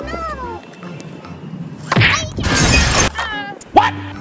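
Cartoon sound effects: short squeaky, sliding voice-like calls, then a loud crash-like noise lasting about a second from about two seconds in, followed by more falling squeaky sounds, laid over a plastic toy cement mixer truck toppling onto its side.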